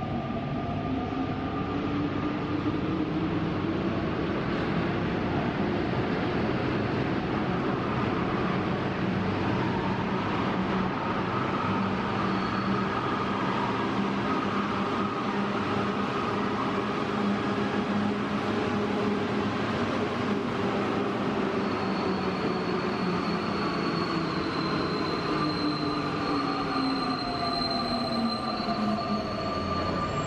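Santiago Metro train running into a station: a steady running rumble with motor tones that rise in pitch over the first few seconds and fall again over the last several as it slows, and a faint high squeal near the end.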